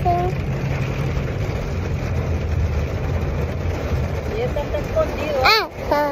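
Steady low rumble inside a car's cabin. Near the end a child's voice makes one short sound that rises and falls in pitch.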